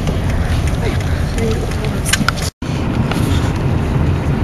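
Car interior road and engine noise while driving, a steady low rumble. It cuts out to silence for a moment about two and a half seconds in.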